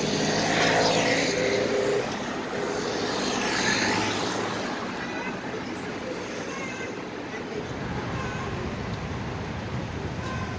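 Night-time street traffic: cars pass close by with engine and tyre noise in the first few seconds, and again around the middle, then steadier traffic farther off.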